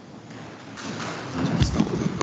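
Knocks, clatter and rustling picked up close to a desk microphone, with a deep thump about a second and a half in, as someone moves at the table.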